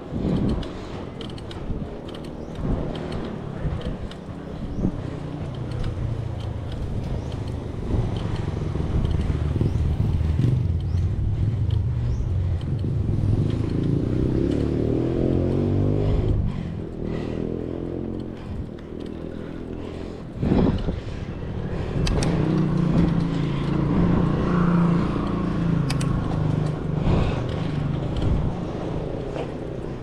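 Wind rushing over the action camera's microphone and tyre noise from a mountain bike rolling on asphalt. Twice a motor engine hum swells and fades, as of a motor vehicle passing. A single thump comes about two-thirds of the way through, as of the bike jolting over a bump.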